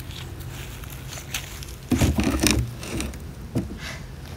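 A heavy wooden deep hive box full of bees being carried and set down onto another hive: footsteps, then about two seconds in a loud clatter and scrape of wood on wood as the box lands, and a single sharp knock near the end.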